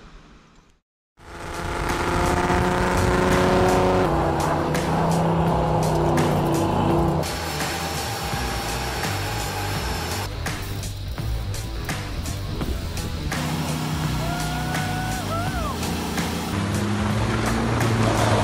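Quick-cut clips of cars doing burnouts: engines held at high revs with tyres spinning. The sound changes abruptly every few seconds as one clip gives way to the next, with a short tyre squeal about three-quarters of the way through.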